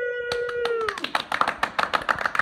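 A man's held, drawn-out shout that stops about a second in, while four men start clapping; the claps come quick and uneven and grow denser as the shout ends.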